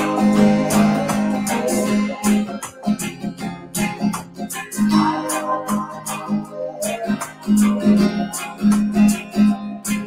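Acoustic guitar strummed in a reggae rhythm, moving between just two chords.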